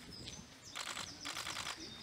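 Small birds chirping in a garden. Two short, grainy, crunching noises about a second in are louder than the birdsong.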